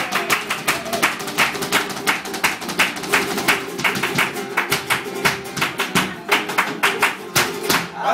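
Flamenco dance footwork (zapateado), rapid sharp heel-and-toe strikes on the stage several times a second, over flamenco guitar.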